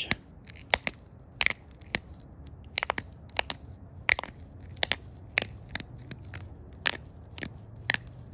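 Rhyolite point being pressure-flaked with a deer-antler flaker: a string of about fifteen sharp, irregularly spaced clicks and crunches as small flakes snap off the stone's edge.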